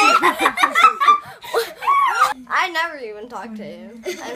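A young girl laughing in quick snickering bursts that die down about halfway through into a long, drawn-out vocal sound with a slowly falling pitch.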